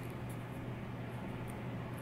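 Steady low hum with a few faint, short ticks and light rustling from fingers handling a sticky adhesive bandage.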